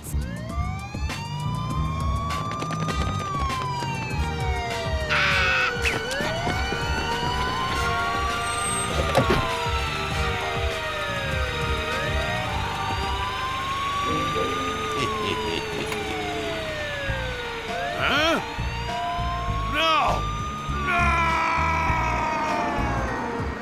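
Police car siren wailing slowly, each rise and fall taking about six seconds, over background music.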